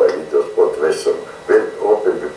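A man talking, heard through a television's speaker.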